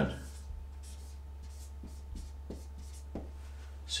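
Marker pen writing on a paper sheet on a wall: a few short, faint strokes as figures are written out.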